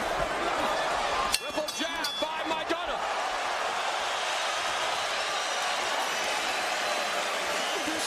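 Boxing arena crowd noise: a steady din of many voices, with a cluster of short sharp sounds and a brief louder voice about a second and a half in.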